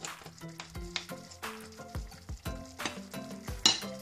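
Wooden spoon stirring cooked rice into vegetables boiling in a stainless steel pot, with scrapes and knocks against the pot and a sharper one near the end. Background music plays under it.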